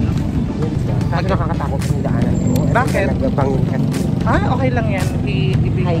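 Men talking in short stretches over a steady, ragged low rumble, wind buffeting the phone's microphone.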